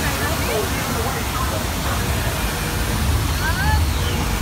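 Steady rush of water from a man-made waterfall, over a low rumble.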